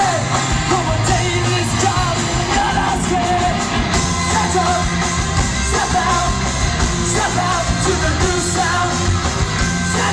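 Live punk rock band playing at full volume: electric guitars, bass guitar and drums, with sung vocals over the top, heard from within the audience.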